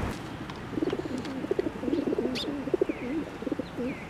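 Pigeon cooing in a low, wavering roll for about three seconds, starting just under a second in, with a few short sparrow chirps above it.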